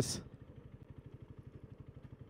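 Motorcycle engine idling while stopped, a faint, even putter of about ten pulses a second.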